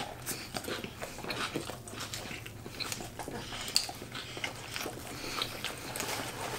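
Two people chewing mouthfuls of bacon avocado cheeseburger close to the microphone: soft, wet mouth smacks and clicks at irregular intervals.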